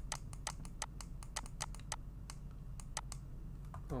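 Light, irregular clicking from a computer input device, several clicks a second, as handwriting is drawn on screen, over a faint steady low hum.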